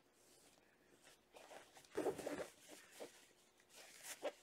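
Faint rustling and scraping of cotton fabric being handled as a stainless steel nose wire is slid into a sewn channel, in short bursts that are loudest about two seconds in.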